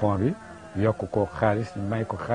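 A man speaking with a deep voice, in short phrases with brief pauses; nothing but speech.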